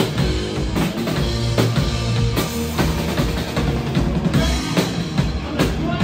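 Live hard-rock band playing: distorted electric guitars and bass over a drum kit, with the snare and bass drum hitting out a steady beat.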